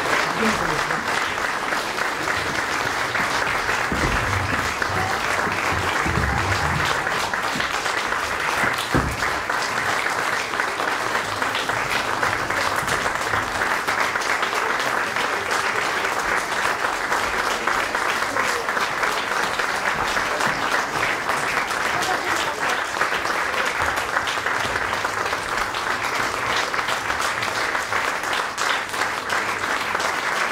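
A theatre audience applauding at a curtain call: many people clapping in a dense, even, sustained patter.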